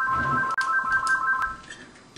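Telephone ringing with an electronic trilling ring of three high, steady tones, which cuts off near the end.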